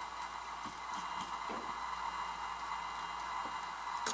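Chinchilla nibbling a leafy twig held in its front paws: a few faint crunching clicks, about a second in, over a steady hiss.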